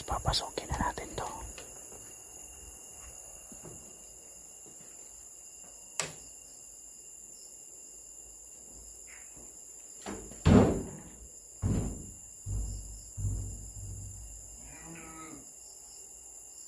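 Sheep bleating about five times in the last third, over a steady chirring of crickets. A few knocks and rattles come near the start.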